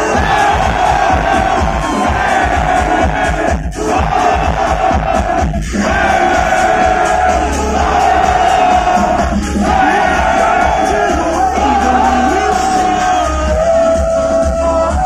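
Live electronic dance music played loud over a festival sound system, with a steady heavy bass under sustained synth lines and a crowd cheering. The music cuts out briefly a few times.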